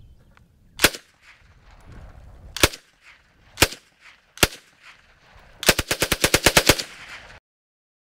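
Czech Sa vz. 26 open-bolt submachine gun in 7.62×25mm Tokarev firing four single shots about a second apart, then a fast burst of about ten rounds lasting about a second. This is the progressive trigger at work: a short pull gives single shots and a full pull gives full auto.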